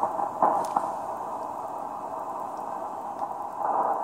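Shortwave receiver hiss on the 40-metre amateur band in lower sideband: steady, narrow, muffled band noise from an empty frequency, with a short crackle about half a second in. Near the end a distant station's voice begins to come through the receiver.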